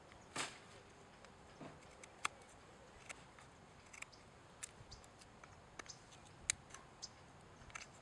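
Folding knife blade paring small chips from a wooden stick while trimming a square notch toward its stop cuts: a longer cut about half a second in, then a series of faint, short, irregular slicing clicks.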